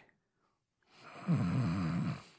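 A man snoring in his sleep: one long, rasping snore starting about a second in, after a moment of silence.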